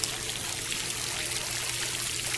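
Steady rushing and splashing of churning water, with a low steady hum underneath.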